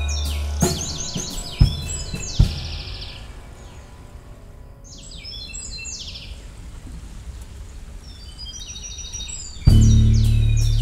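Live band music thinned to birdsong: quick, repeated high chirping calls that come and go. A deep sustained note breaks off under a sharp drum hit about half a second in, and two more hits follow. A loud deep bass note comes back in just before the end.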